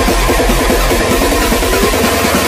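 Jungle dutch electronic dance music played loud with a heavy, pulsing bass, mixed on Pioneer CDJ-1000MK2 decks and a DJX-750 mixer. The deep bass thins out about halfway through, and a rising tone slides up near the end.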